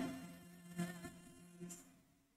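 A choir's last sung chord cutting off and fading away in the hall's reverberation, leaving only a faint lingering tone.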